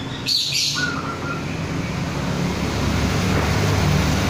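Caged zebra doves (perkutut) calling: a brief shrill chirp about a third of a second in, followed by a short clear note. A steady low rumble runs underneath.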